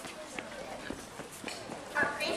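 Faint chatter of voices, with a few short knocks from a handheld microphone being handled as it is passed between hands.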